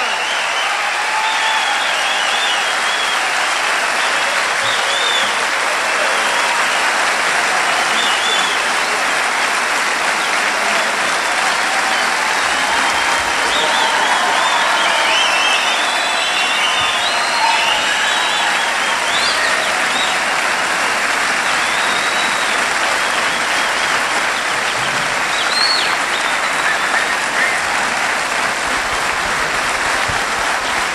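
Large concert audience applauding steadily, with scattered cheers over the clapping.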